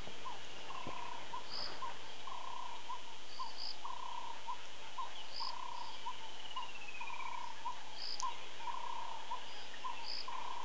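Dusk bush chorus of crickets and other night callers at a waterhole. A mid-pitched call repeats about twice a second, short high chirps come every second or two, and a descending trill sounds twice.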